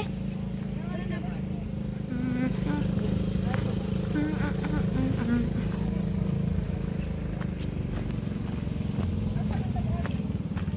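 Motorcycle engine running steadily at low pitch while riding along a gravel dirt road, with faint voices over it.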